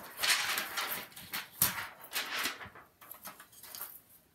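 A plastic paper trimmer being set down on a cutting mat with a sharp clack about a second and a half in, amid the rustle and slide of paper and card being lined up under it.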